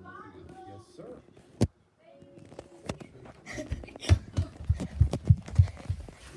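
A single sharp click about a second and a half in, then, from about halfway through, a quick irregular run of low thuds, about four a second: footsteps on a floor close to a handheld phone's microphone as it is carried.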